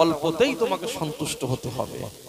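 Speech only: a man's voice preaching into a microphone.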